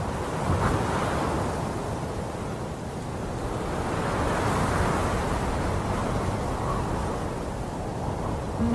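A rushing wash of noise with no music, swelling about half a second in and again around the middle, then easing off toward the end.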